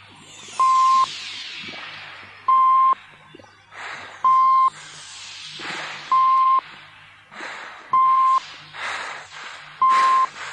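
Electronic beep, one pure tone about half a second long repeating roughly every two seconds, with noisy downward swooshes between the beeps over a low steady hum. Denser noise bursts come in near the end. It is an electronic sound-effect passage within a dance-music mix.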